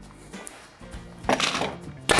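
Pneumatic upholstery stapler firing once, a little past halfway, to tack stretched fabric to a wooden chair frame.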